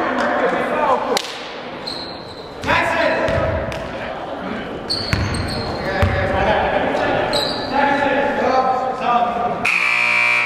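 A basketball bouncing on a hardwood gym floor with voices echoing around a large gymnasium. Near the end a steady tone with many overtones starts suddenly.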